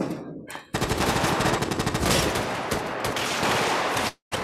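Film sound effects of automatic gunfire: a long, rapid, continuous burst of shots starting about three-quarters of a second in and cutting off abruptly at the end, heard with no score under it.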